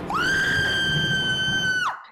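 A high-pitched scream: one held note that rises at the start, stays steady for nearly two seconds and drops away at the end, over a rough noisy background.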